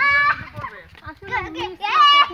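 Children playing and shouting, with high-pitched calls that are loudest right at the start and again near the end.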